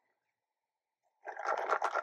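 Silence for about a second, then a short sip of iced coffee drawn through a plastic straw.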